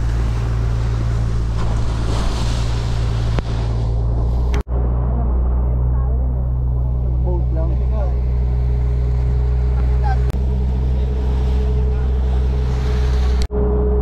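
Outrigger boat's engine running steadily, a constant low drone, with people's voices in the background.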